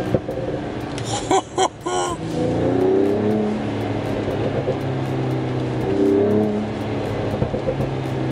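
Mercedes-AMG CLS 53's turbocharged 3.0-litre inline-six, in Sport+ mode, heard from inside the cabin. It revs up twice with a rising engine note, and its exhaust gives two sharp pops about a second and a half in.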